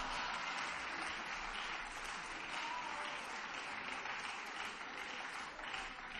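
Applause from members of parliament in a large plenary chamber: steady clapping that eases off slightly toward the end.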